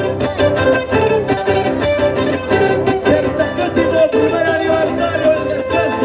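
Andean qhaswa dance music on string instruments: plucked strings strummed in a quick, even rhythm under a fiddle-like melody.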